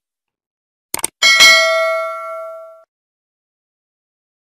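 Subscribe-button animation sound effect: two quick clicks about a second in, then a bright bell ding that rings on and fades over about a second and a half.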